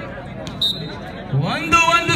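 Volleyball struck with a hand in a single sharp smack about half a second in, over crowd chatter. From the middle on, a man shouts loudly, his voice rising.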